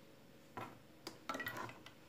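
A few faint clicks and light clinks, about half a second in and again between one and two seconds in: small objects handled on a tabletop.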